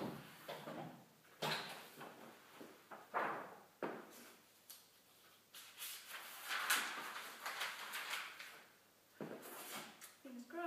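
Intermittent knocks and short sliding scrapes from work at a cast-iron hand printing press, with a longer stretch of rustling about two-thirds of the way through.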